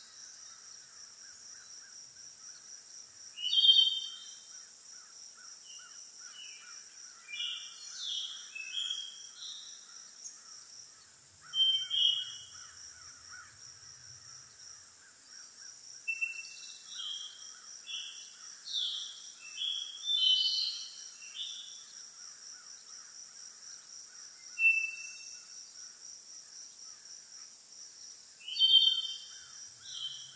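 Countryside ambience: insects trilling steadily, a high pulsing trill over a lower dry buzz. Short bird chirps and whistles break in now and then, loudest about 4, 12, 20 and 29 seconds in.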